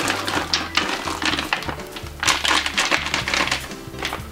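Hops being shaken out of a foil bag into the brewing kettle, an irregular crinkling and rattling, over background music with a steady bass line.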